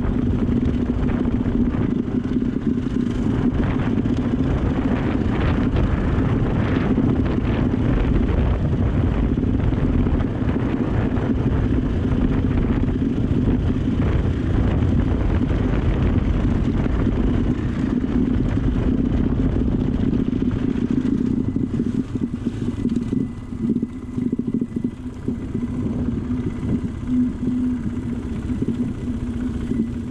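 Dirt bike engine running steadily under way over a gravel track. In the last third the sound turns choppier and dips in level as the bike eases off.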